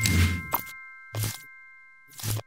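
Logo sting sound effect: a bell-like chime of several tones ringing on and slowly fading. Short swooshing hits with low thumps land at the start and again about a second in.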